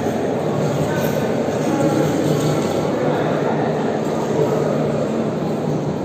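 Steady, loud background din of a large, echoing sports hall: indistinct voices blended with constant room noise, with no single sound standing out.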